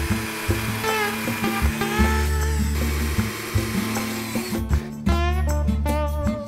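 Cordless drill driving screws into the wooden boards of a raised-bed frame, its motor whine rising and falling, until it stops about four and a half seconds in. Background music with a steady bass line plays throughout.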